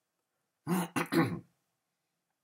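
A man coughing to clear his throat: three quick bursts close together, a little under a second in.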